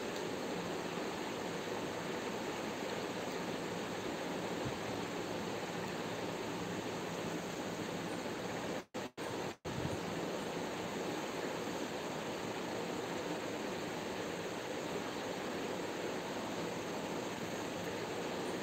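Steady, even background hiss with no speech, cut by three brief dropouts about nine seconds in.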